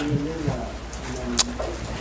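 Faint murmured voice sounds with a single sharp click about one and a half seconds in, over a steady low hum.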